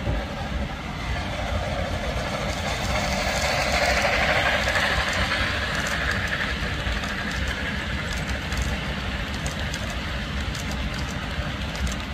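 Model Milwaukee Road Hiawatha passenger train rolling past on the layout track, its running noise swelling as the cars pass closest about four to six seconds in, then fading. Light clicking near the end.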